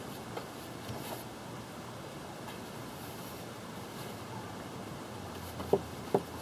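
Quiet, steady outdoor background with a few faint clicks, then one sharp tap near the end as a stick in the tray of mixed epoxy is picked up and knocks against the tray.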